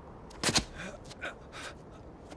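A person gasping and breathing raggedly in short, breathy bursts, after a sharp, loud burst about half a second in.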